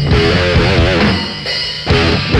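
Heavy metal music: a drum kit and electric guitar playing a riff, with a wavering bent note about halfway through and a short dip in level near the end.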